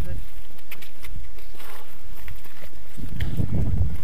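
Footsteps and scrambling on a rocky trail heard through a body-worn camera, with low rumbling on the microphone that is loudest about three seconds in.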